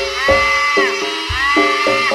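Live Javanese traditional dance music. A high, reedy wind instrument holds long notes that droop at their ends, over a steady pattern of short pitched percussion notes and low drum beats.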